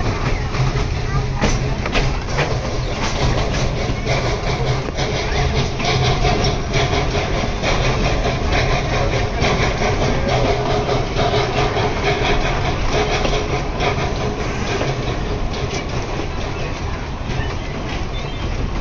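Steam-hauled train carriage rolling along the track, heard from on board: a steady rumble with wheels clicking and rattling over the rails.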